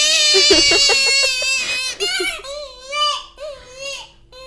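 A man's voice imitating a baby crying: a loud, high, wavering wail for about two seconds, then shorter rising-and-falling whimpering cries that grow fainter.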